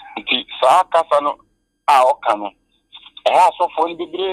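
Speech only: a person talking in short phrases, the voice narrow and thin as if heard over a telephone line.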